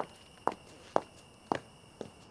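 A person's brisk footsteps: four sharp steps, about two a second.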